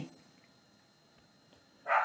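Near silence: room tone in a pause between phrases of a man reading aloud. His voice trails off at the very start, and the next word begins with a hiss just before the end.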